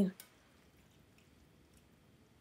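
Near silence, with a faint click just after the start and a few faint soft wet sounds of a spoon gently stirring thick tomato sauce and beans in a pot.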